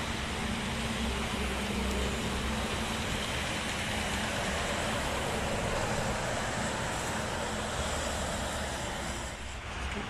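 Steady toll-road traffic noise: tyres and engines of passing vehicles, with a Scania K410 double-decker coach going by at speed. Its low hum fades out after the first few seconds.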